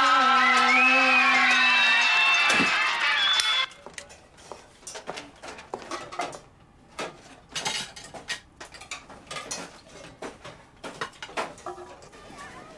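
Men singing together loudly, cutting off suddenly about three and a half seconds in. After that, restaurant kitchen clatter: scattered clinks and knocks of dishes, pans and cutlery.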